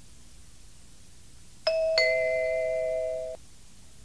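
Two-note ding-dong chime, a higher note and then a lower one, ringing together for about a second and a half before stopping.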